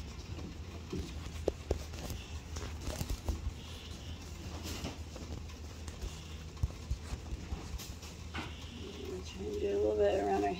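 Chickens calling softly amid scattered rustling and small taps; a rooster starts crowing near the end.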